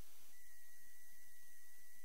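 Faint steady hiss with a thin high tone, and a second steady tone that comes in just after the start: a near-empty stretch of the recording.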